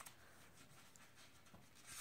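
Near silence: quiet room tone with a faint rustle of hand-held paper script pages near the end.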